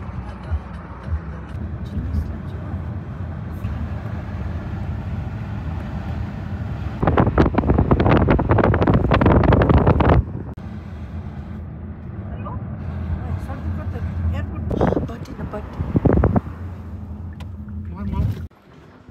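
Steady low road and engine rumble of a moving car, heard from inside the cabin, with a much louder stretch of rushing noise for about three seconds midway.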